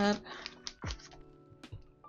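Clear plastic zip envelopes and pages of a ring-bound cash budget binder being flipped and handled: a few short rustles and light taps, over soft background music.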